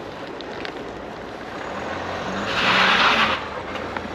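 A car passing on a wet road: tyre hiss swells to a peak about three seconds in, then falls away quickly, with a faint engine hum underneath.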